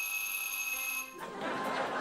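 Electronic buzzer sounding one steady high tone that cuts off about a second in.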